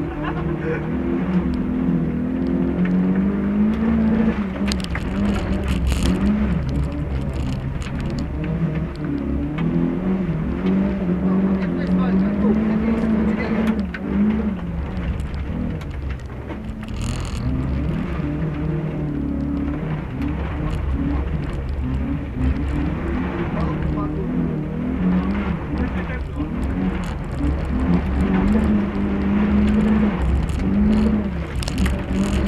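A small car's engine, heard from inside the cabin and driven hard on a dirt track, revving up and dropping back again and again through the corners, over a constant low rumble from the tyres and body, with a few sharp knocks.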